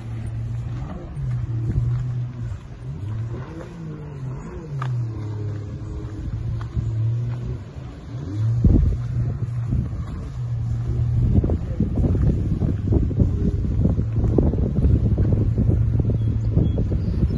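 A low motor hum that wavers up and down in pitch, with wind buffeting the microphone. The gusts grow stronger and more constant in the second half.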